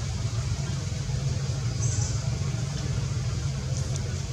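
A steady low engine hum, like a vehicle idling nearby.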